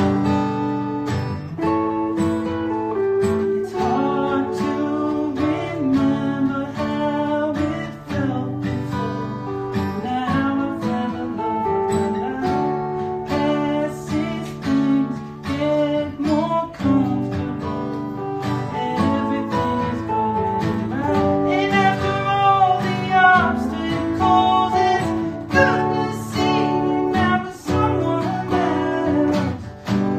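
Acoustic guitar strumming chords together with an electric guitar playing the melody, in a live duo performance of a pop song, with a man singing over them.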